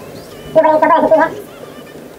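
A man's wordless voice with his mouth full while he chews: one drawn-out pitched hum starting about half a second in and lasting under a second.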